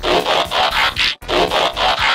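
Mechanical transformation sound effect for a toy robot changing from car to robot mode: two runs of quick raspy, ratcheting pulses, each about a second long, with a short break just over a second in.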